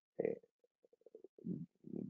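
A man's hesitant 'uh', then a pause holding a faint run of short, evenly spaced throat clicks and soft low vocal sounds.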